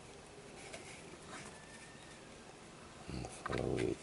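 Faint rustling and scattered ticks of cord being pulled through a Turk's head knot on a cardboard tube. About three seconds in comes a louder, low-pitched sound in two short parts.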